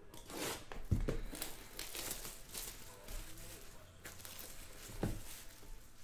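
Plastic shrink-wrap crinkling and tearing as a sealed trading-card box is unwrapped by hand, with two thumps, about a second in and near the end.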